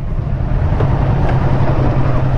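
Kawasaki Versys 650 parallel-twin engine running at low speed, a steady low hum with road noise, heard from the rider's seat.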